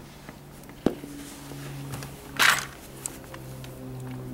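Hands fitting a plastic side cover against a massage chair's metal frame: a sharp click about a second in, then a short, loud scraping rustle midway. Soft background music with sustained low notes underneath.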